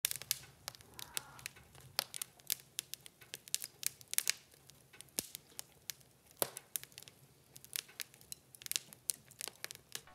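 Wood fire crackling: burning logs give off irregular sharp pops and snaps, several a second, some louder than others.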